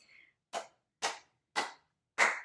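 Hand claps: three sharp claps about half a second apart, the start of a New Orleans clapping rhythm.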